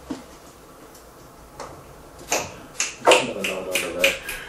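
A man snapping his fingers: about five sharp snaps in the second half, coming closer together toward the end, after a quiet stretch.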